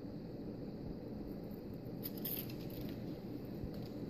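Low, steady room hiss with a few faint, brief crinkles about halfway through and again near the end, from thin nail-art packets and papers being handled.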